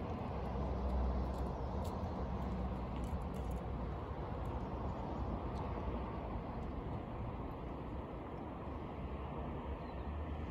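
Steady outdoor background noise with a low rumble, heavier in the first few seconds and easing later, and a few faint ticks near the start.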